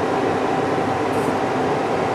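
Handheld gas blowtorch burning, a steady rushing noise with a faint constant tone in it.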